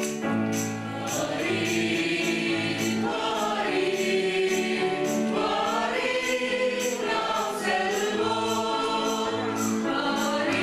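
Mixed choir of men and women singing a Tamil Christmas song, over instrumental accompaniment with a bass line. A light percussion beat ticks about twice a second.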